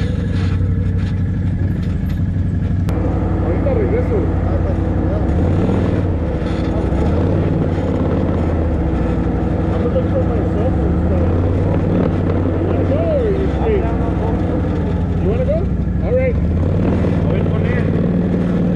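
ATV engines idling at the staging area, briefly revving up and back down a few times in the middle.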